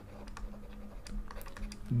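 Light, irregular clicks and taps of a stylus on a digital writing tablet as a word is handwritten.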